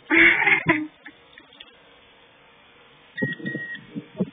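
A loud, brief burst of noise at the start. About three seconds in comes a single steady electronic beep lasting about half a second, from the power wheelchair's control system.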